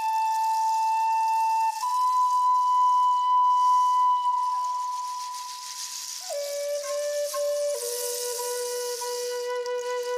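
A wooden Native American-style flute playing a slow, breathy melody of long held notes. It steps up to a higher note about two seconds in, slides down and fades around the middle, then settles on lower held notes to the end.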